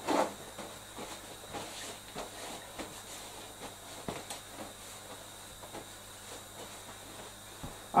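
Paper towel pulled and torn off a roll, followed by faint rustling of the paper as hands are dried, over a steady low hiss.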